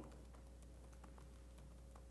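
Faint typing on a laptop keyboard: a few scattered key clicks over a low steady hum.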